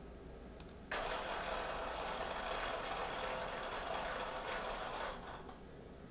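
Rethink Robotics Sawyer robot arm's joint actuators whirring as the arm carries out a planned motion trajectory. The steady whir starts abruptly about a second in and fades out about a second before the end as the arm comes to rest.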